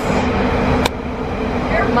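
Train running along the track, heard from inside the carriage: a steady low rumble with a faint hum, and a single sharp click about a second in.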